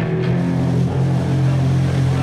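Live rock band's amplified electric guitar and bass holding one low chord that rings on steadily and loud.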